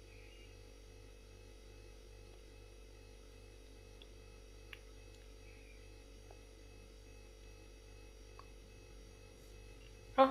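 Near silence: room tone with a faint steady low hum and a few tiny ticks.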